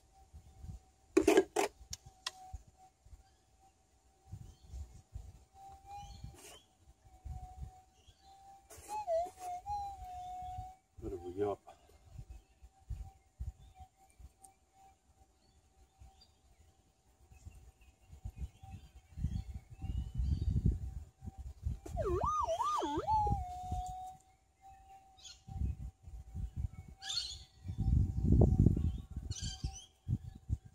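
Minelab GPZ 7000 metal detector's steady threshold hum, wavering in pitch a few times as a target responds while a handful of soil is checked over the coil. Low bumps and rustles of the soil being handled come and go, with a sharp click about a second and a half in.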